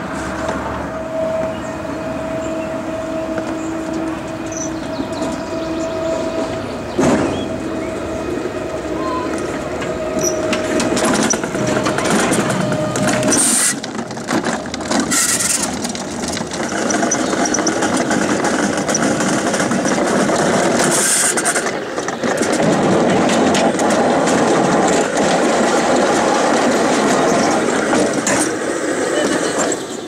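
Alpine coaster sled running along its steel trough track: a continuous rumble from the wheels on the rail, with a steady whine through roughly the first half and the rumble growing louder in the last several seconds.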